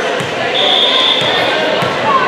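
Volleyball bounced on the hardwood gym floor before a serve, three dull thuds, with a steady high whistle tone lasting about a second between them: the referee's whistle that authorizes the serve. Crowd chatter carries on underneath in the echoing gym.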